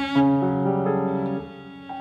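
Cello and piano playing contemporary classical chamber music, the piano to the fore. The playing drops to a quieter, thinner sound about one and a half seconds in.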